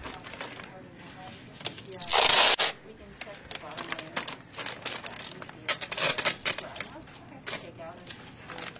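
Large clear plastic bag crinkling and rustling as gloved hands work it, with many small crackles and one loud, harsh rustle of about half a second roughly two seconds in.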